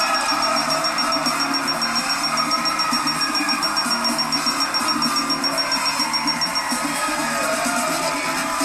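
Game-show music cue playing with a quick, steady pulse, over a studio audience cheering and clapping.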